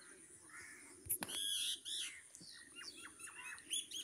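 Faint bird chirps in the background: short, repeated chirps, coming in a quick run of several a second near the end.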